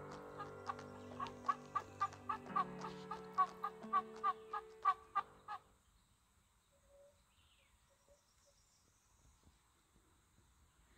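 A hand-held turkey call yelping in a quick run of short notes, about three a second, over background music with held chords. Both stop about six seconds in.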